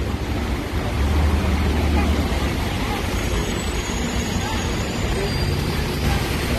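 City street traffic on rain-wet roads: a steady hiss of tyres on wet pavement over a low engine rumble that swells about a second in.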